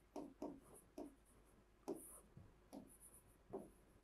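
Faint taps and scratches of a stylus writing on an interactive display board, in short irregular strokes as each letter is formed.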